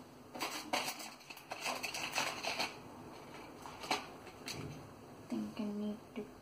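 Light clicks, taps and rustles of small art supplies being handled on a tabletop: a quick cluster in the first few seconds, then a couple of single clicks.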